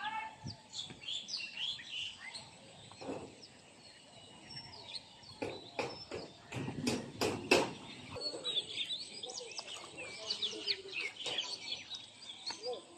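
Small birds chirping and calling again and again, with a cluster of louder sharp knocks or splashes from about five and a half to eight seconds in.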